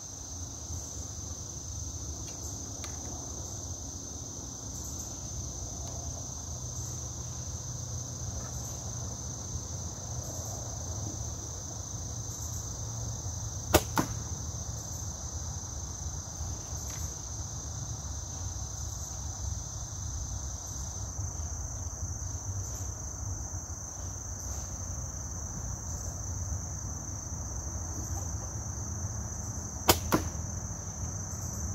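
A compound bow shot about halfway through: a sharp snap as the string is released, followed a fraction of a second later by a second crack as the arrow strikes the target. A steady high-pitched insect chorus sounds underneath.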